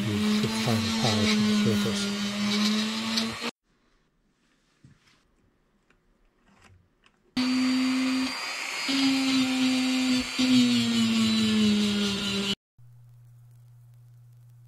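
A Dremel rotary tool with a small wire wheel runs at high speed against a soldered brass-and-copper lens holder, wire-brushing it clean. It runs for about three and a half seconds and stops, and after a pause of about four seconds runs again for about five seconds. Its whine dips briefly twice and sags in pitch before it cuts off. A faint low hum follows near the end.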